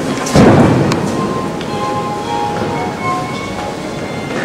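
A sudden loud rumbling thump about a third of a second in, fading over about half a second, over the steady background hush of a large church interior. Faint held musical notes sound from about a second in.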